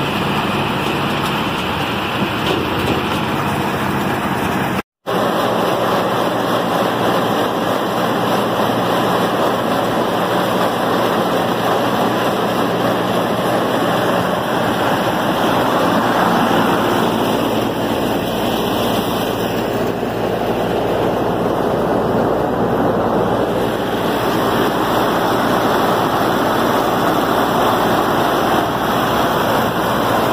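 A tractor and its pull-type corn picker running in the field, cut off suddenly about five seconds in. After that comes the steady running of a tractor driving a chain elevator that carries ear corn up into a round corn crib.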